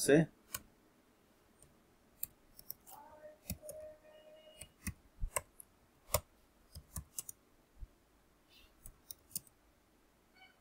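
Computer keyboard typing: scattered single keystrokes clicking at an irregular, unhurried pace with pauses between them. A faint, drawn-out pitched sound sits in the background a few seconds in.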